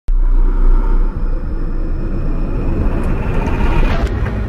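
Channel logo intro sound effect: a loud, deep cinematic rumble with a faint steady high tone above it, swelling into a rising whoosh near the end as the logo appears.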